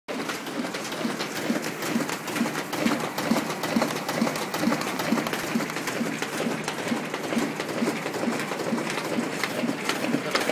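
Office printing machine running off flyers, sheets feeding through in a steady mechanical rhythm of about two to three beats a second, with quick clicks over it.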